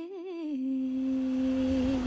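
The song's final vocal note: its pitch wavers at first, then settles into one long steady held note over a low bass drone that comes in about half a second in.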